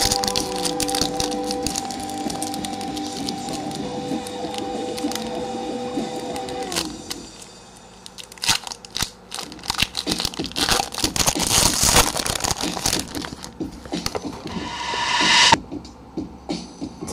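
Foil trading-card booster pack wrapper crinkling, crackling and being torn open, with background music holding steady notes over the first half. The crackling is densest in the second half and swells into a rush of tearing just before it cuts off near the end.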